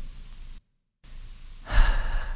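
A man's audible breath, airy and brief, near the end of a pause in his speech, after a moment of complete silence.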